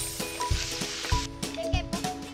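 Chili sambal sizzling in oil in small clay plates over a fire, a hiss that fades out after about a second, over background music with a steady beat.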